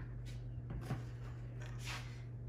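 Faint handling sounds as a plastic vegetable-oil jug is set down on a stone countertop, with a small knock about a second in, over a steady low hum.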